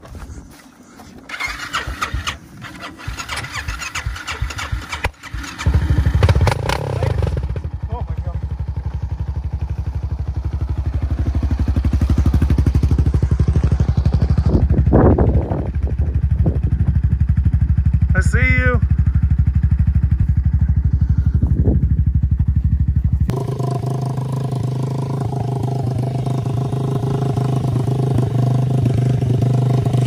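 A sport quad's engine starts about five seconds in and runs steadily with a low pulsing note. About 23 seconds in, the sound changes abruptly to a small Yamaha 90 dirt bike engine idling with a higher, more tonal note.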